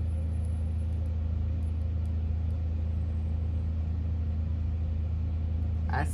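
A steady low hum that runs on without a break, with a few faint ticks on top.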